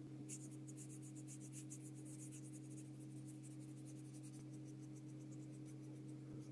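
Paintbrush bristles scratching and dabbing on paper in quick repeated strokes, dense for the first few seconds and then sparser. A steady low hum runs underneath.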